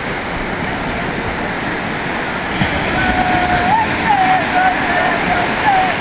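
Surf washing steadily over a sandy shore around people wading in the shallows. From about halfway, a man's voice calls out in a long, wavering chant over the water noise.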